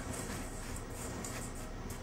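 Quiet room tone: a steady low hiss with a few faint, light clicks.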